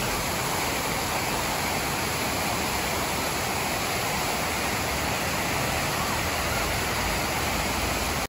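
Water jets of the Stone Flower fountain falling into its basin: a steady, even rush of splashing water.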